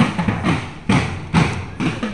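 School band drums beating a steady march rhythm, about two strikes a second with lighter hits between.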